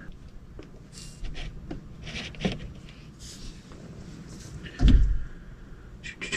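Handling noises as a small plastic gauge pod and its loose wires are held and shifted against the dash: scattered light clicks and rustles, then one loud deep thump about five seconds in.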